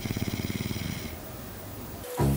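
A woman snoring in her sleep: one fluttering snore of about a second that fades out.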